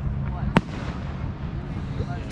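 Aerial firework shell bursting with one sharp bang about half a second in, over a continuous low rumble.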